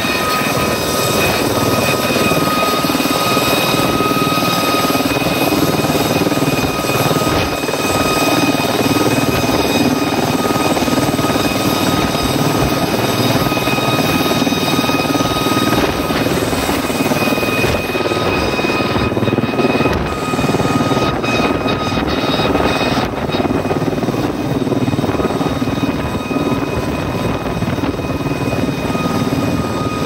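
Aérospatiale Gazelle helicopter hovering close overhead: steady rotor and turbine noise with a high whine held throughout, the sound thinning slightly in its upper reaches past the middle.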